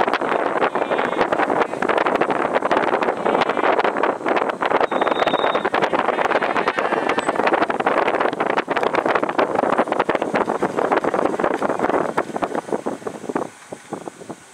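Wind buffeting the microphone of a camera carried at speed, with many small knocks and jolts from its handling. It stops abruptly near the end as the camera comes to rest.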